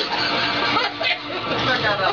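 People talking, with a couple of brief knocks about a second in.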